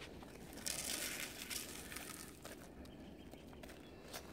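Faint crunching and rustling of footsteps in crusted, icy snow, with a few small crackles.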